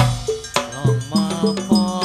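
Hadrah ensemble playing: frame drums and hand drums beat a quick steady rhythm, about three strokes a second, each stroke ringing briefly at a low pitch, with a male voice singing over them.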